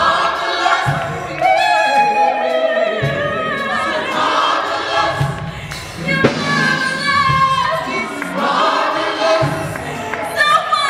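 Gospel choir singing a full, sustained passage, several voices holding and bending long notes. Short low thumps come in now and then underneath.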